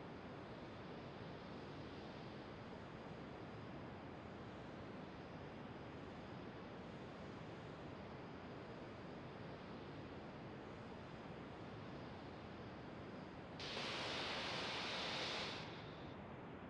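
Falcon 9 rocket venting propellant vapour on the launch pad: a faint steady hiss, with a louder burst of hissing about two seconds long near the end.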